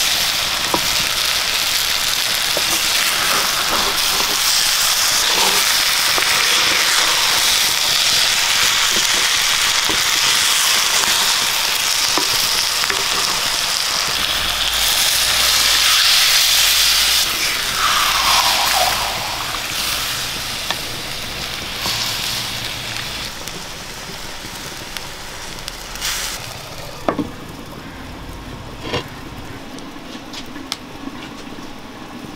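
Sardines and masala sizzling in hot oil in a black clay pot while a spatula stirs them. About halfway water is poured in, bringing a louder rush of sizzling that then dies down. A few sharp knocks come near the end as the clay lid goes on.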